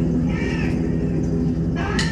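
A steady low droning chord through the PA, with high, wavering, cat-like wailing cries over it about half a second in, and a rushing swell near the end, as the concert intro begins.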